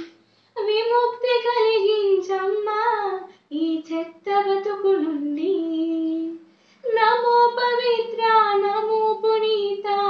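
A teenage girl singing a patriotic song solo with no accompaniment, in long held melodic phrases with brief pauses for breath between them.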